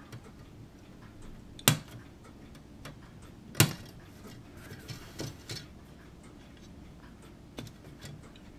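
Sprue cutters snipping parts off a plastic model-kit sprue: two loud, sharp snips about two seconds apart, with a few fainter clicks around them.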